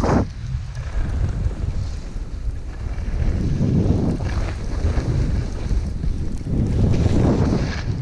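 Heavy wind rumble buffeting the microphone during a fast downhill run on a snowy slope, with the hiss of skis or a board on the snow swelling up about three times as the rider turns.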